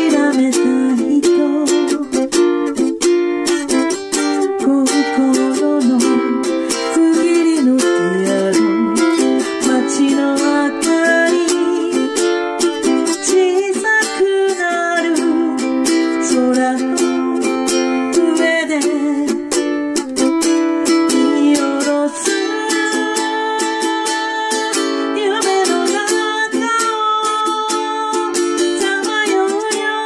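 Ukulele strummed in a steady, rapid rhythm, with the chords changing as the song goes on.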